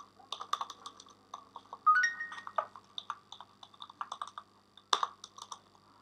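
Typing on a computer keyboard: irregular keystroke clicks as code is entered, with louder strokes about two seconds in and near five seconds. A brief rising tone sounds about two seconds in.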